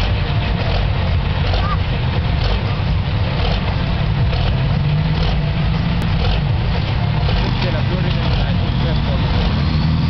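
Pulling tractor's engine running at low, steady revs with a deep drone as it creeps forward hitched to the weight-transfer sled, not yet at full pull.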